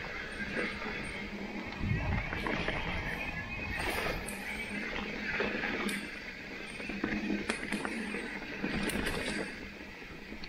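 Mountain bike rolling fast down a dirt singletrack trail: a steady rush of tyres on dirt with irregular rattles and knocks from the bike over the bumps.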